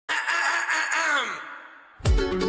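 A drawn-out, sigh-like voice that holds, then slides down in pitch and fades away, coming in just after the music cuts off.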